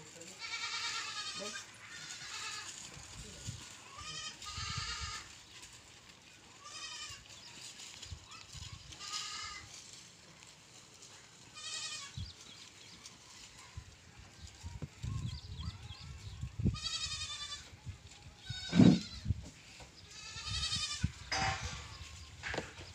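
Goats bleating again and again, about ten quavering calls spread through, with the loudest call near the end.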